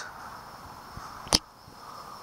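Faint, steady chirring of night insects, with one sharp click about two-thirds of the way through.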